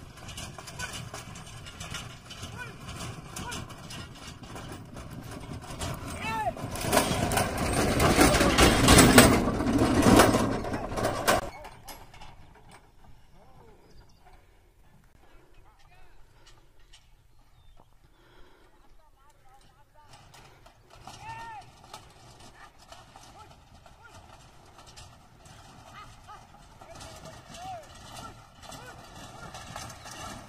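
Bullock cart drawn at a run by a pair of bullocks, its hoofbeats and cart noise building up over several seconds to a loud peak, then cutting off suddenly. After that only faint open-field sound with a few short calls.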